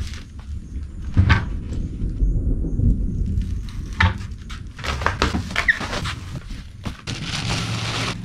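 A large cardboard box holding a heavy steel electrical enclosure being tipped and shifted about: low rumbling and scraping of the cardboard, with several sharp knocks. Near the end comes a rustle of plastic wrapping as the cabinet is uncovered.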